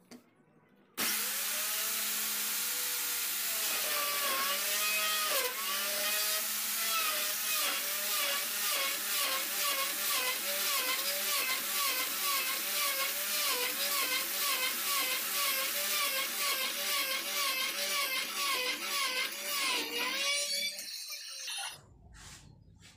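Electric plunge router switching on about a second in and cutting a lock mortise into the edge of a wooden door. Its motor whine dips in pitch again and again, about twice a second, as the bit takes load. It switches off near the end and winds down.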